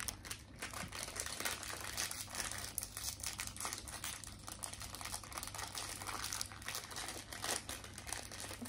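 A plastic snack wrapper crinkling and crackling steadily as it is worked open by hand.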